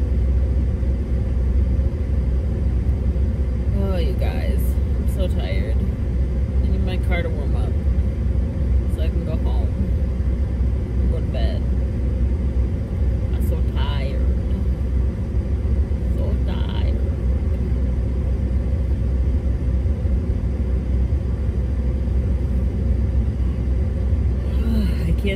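Steady low rumble inside a stationary car's cabin, typical of the car running while parked, with a few brief faint voice-like sounds scattered through it.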